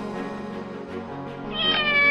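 Background music, with a cat's meow over it starting about three-quarters of the way in: one drawn-out call that falls slightly in pitch and is the loudest sound here.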